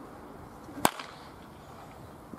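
A baseball bat hitting a pitched ball in batting practice: one sharp crack just under a second in.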